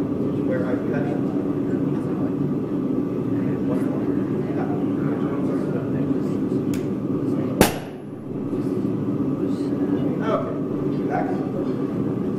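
Steady rushing roar of a propane gas forge burner, with a single sharp hammer blow on a hot-cut tool held over the hot bar on the anvil about seven and a half seconds in.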